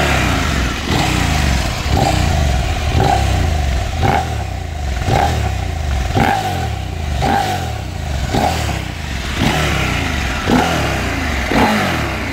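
Husqvarna Norden 901's parallel-twin engine running on the stand with the throttle blipped about once a second, the revs rising and falling each time.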